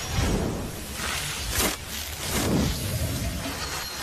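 Film sound effects of a superpowered fire blast: loud rushing noise that surges several times, with a sharp crack about one and a half seconds in.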